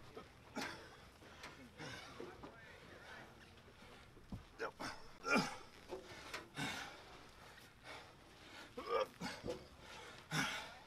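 A soldier's grunts and hard breaths, coming in short bursts, the loudest about five seconds in, as he strains to lift heavy sandbags.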